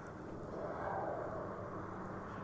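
A vehicle passing on the road, faint tyre and engine noise that swells about a second in and then fades.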